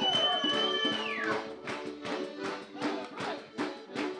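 Background music with a quick, steady beat. A long high note is held near the start and then falls away.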